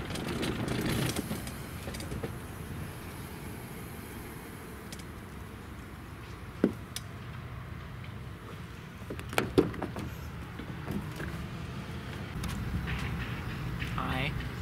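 Steady low outdoor rumble, broken by a few sharp clicks and knocks, the loudest about six and a half and nine and a half seconds in, from the doors of a Hyundai SUV being handled and opened.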